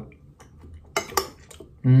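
A metal teaspoon clinking twice against a plate about a second in, as a spoonful of cake is scooped up.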